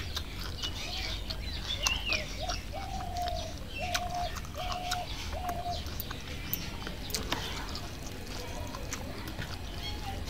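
Birds calling: high chirps and twitters in the first two seconds, then one bird gives a run of about five short, flat notes on one pitch, a little under two a second, that stop about six seconds in.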